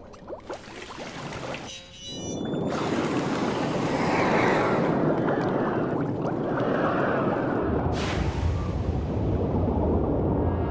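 Cartoon sound effect of glowing ooze rushing through a pipe: a loud, steady rush of liquid noise sets in about two seconds in, and a deep rumble joins near the end, over background music.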